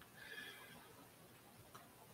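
Near silence: room tone, with a faint, short high-pitched sound about half a second in and a faint click near the end.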